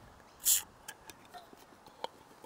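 A tin of corn being opened: one short, sharp crack about half a second in, followed by a few faint small clicks.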